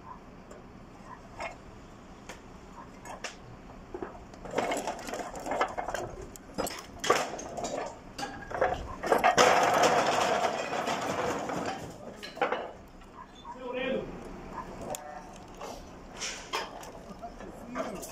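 Clay roof tiles clattering, cracking and scraping against a metal tank as it is hoisted up out of the roof; the clatter starts about four seconds in and is loudest in the middle.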